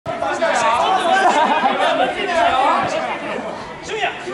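Several people's voices chattering and calling out over one another, with a short sharp knock near the end.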